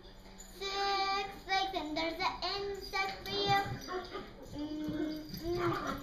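A young girl singing in a high child's voice, in short notes that rise and fall, beginning about half a second in.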